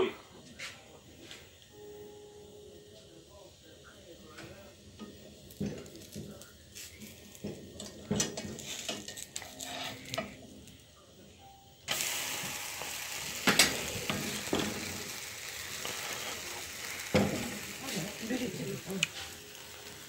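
Thin pancake (blin) batter frying in a frying pan, with faint scraping clicks of a spatula working under its edge. About twelve seconds in, a sudden louder sizzle starts and keeps on, with a few knocks of the pan: the pancake has been turned onto its raw side against the hot pan.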